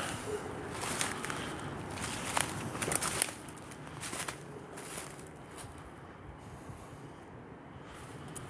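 Footsteps on dry fallen leaves on a forest floor, irregular steps that are louder in the first three seconds and softer after.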